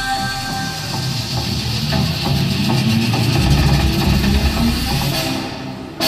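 Stage music over a PA: a held note dies away in the first second, leaving a steady, hissing, rumbling wash of sound that fades near the end.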